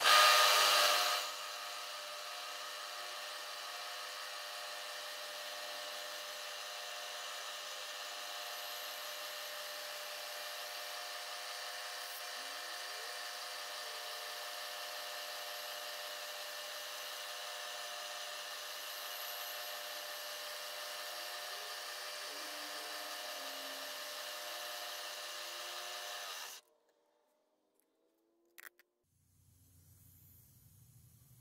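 Milling machine spindle running with an end mill taking a very light clean-up cut on a metal casting: a steady whine made of many even tones. It is loudest in the first second and stops abruptly a few seconds before the end.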